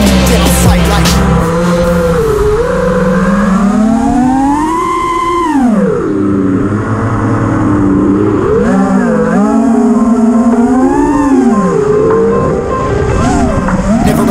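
FPV quadcopter's brushless motors (iFlight Xing) whining, the pitch of the stacked tones rising and falling with the throttle, with a sharp drop about six seconds in and another climb a couple of seconds later. Music plays underneath.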